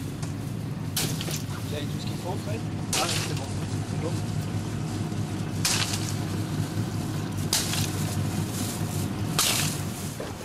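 A steady low engine hum, with faint voices and a few short bursts of hiss.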